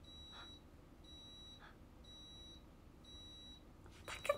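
Faint electronic alarm beeping: a high, steady beep about half a second long, repeated about once a second, four times.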